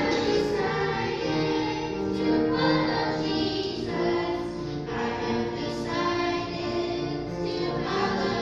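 A group of children singing a song together in unison, holding notes that change every half second or so.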